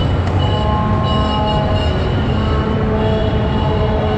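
Loud, steady traffic rumble in a road underpass, with several thin, steady high tones held over it.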